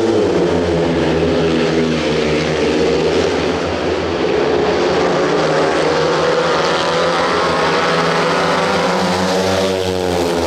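A pack of speedway motorcycles, 500 cc single-cylinder methanol engines, racing flat out round the track, loud and steady. The engine pitch swings as bikes sweep close by, at the start and again near the end.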